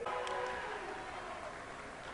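Faint crowd murmur and room noise in a gymnasium, fading down slowly.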